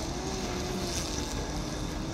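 Steady industrial noise of a working rapeseed-processing plant: a continuous drone with a faint hum that wavers slowly in pitch.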